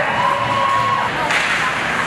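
Spectators in an ice rink cheering and shouting as a goal is celebrated. A held, whistle-like tone lasts about a second at the start, and the crowd noise swells about a second and a half in.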